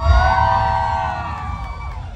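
Concert audience cheering and screaming, many high voices held together for about a second and a half before fading, over the low bass of the music.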